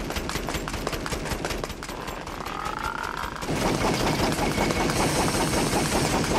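A rapid, continuous run of sharp crackling pops that grows denser and louder about halfway through, with a short wavering whistle just before the build.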